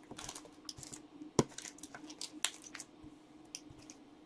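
Hard clear plastic trading-card cases and top loaders clicking and rustling as they are handled and sorted by hand, in irregular small clacks with a couple of sharper clicks.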